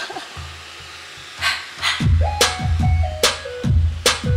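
The intro of a song's electronic beat, played live: a couple of sharp hits about one and a half seconds in, then from about two seconds a repeating pattern of deep, falling kick-drum thumps and sharp hits, with a stepped synth melody above them.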